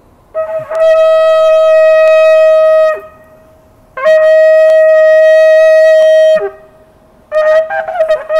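Ram's horn shofar blown in two long, steady, bright blasts with a brassy edge, a short pause between them. Near the end a run of short broken blasts begins.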